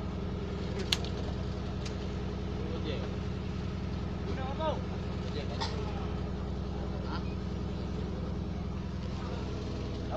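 A fishing boat's engine running steadily at low revs, with a sharp click about a second in and a lighter one a second later.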